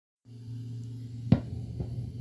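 Steady low electrical hum from a plugged-in guitar setup, with one sharp click about a second in and a fainter one shortly after; the guitar is not yet being played.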